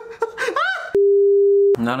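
A man laughing, then an edited-in censor bleep: one steady pure tone of just under a second that starts and stops abruptly, the loudest sound here, before speech resumes.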